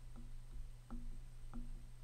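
Faint background music: a short plucked note about every two thirds of a second, over a steady low hum.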